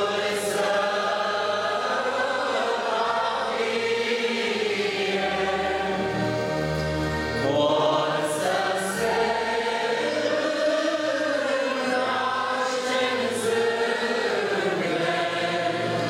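A congregation singing a slow Romanian hymn together, many voices on long held notes, with low sustained bass notes underneath.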